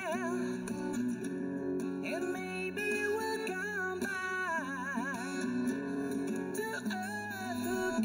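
Male singer holding high notes with a fast, wide vibrato over fingerstyle acoustic guitar.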